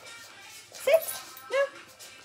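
Pet dog giving two short, sharp barks, the first just under a second in and the second about half a second later, begging for the treat held up over its head.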